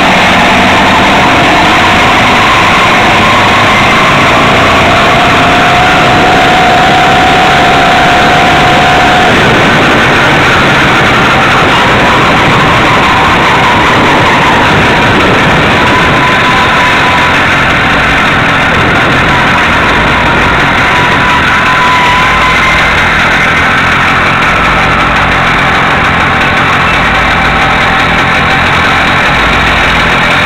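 Small two-stroke engine of a motorized bicycle running under way, loud and close, its pitch drifting up and down with speed.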